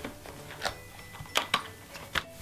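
Paperboard fries box being opened and handled by hand: a few short, crisp clicks and rustles of card, three sharper ones standing out against a quiet background.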